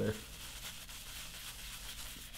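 Shaving brush swirling a thick, freshly built shave-soap lather on a bearded cheek: a soft, steady scrubbing hiss.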